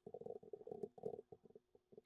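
Faint, muffled computer keyboard typing: a quick, irregular run of keystrokes that thins out about a second and a half in.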